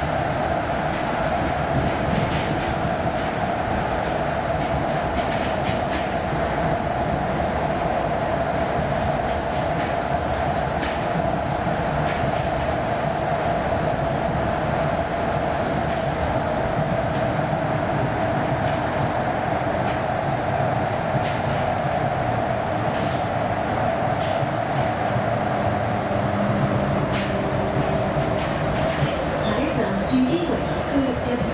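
Airport shuttle people-mover train running at steady speed in a tunnel, heard from inside the car: a constant whine over a rolling rumble, with a few light clicks along the way.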